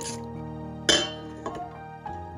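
Background music with held notes, over which a metal spoon clinks sharply against a stainless steel bowl about a second in while stirring liquid, with a lighter tap shortly after.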